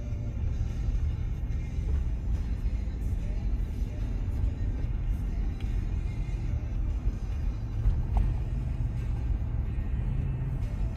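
Steady low road and engine rumble inside the cabin of a moving Ford SUV, with music playing over it.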